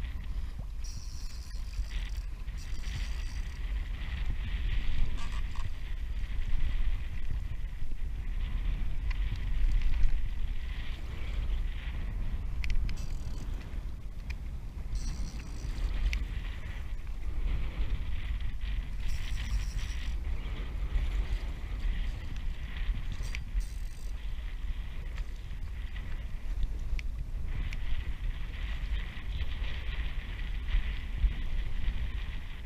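Water rushing and splashing along a plastic fishing kayak's hull as a hooked stingray tows it, over a steady low rumble of wind buffeting the action camera's microphone. The water noise swells and fades, loudest about five and ten seconds in.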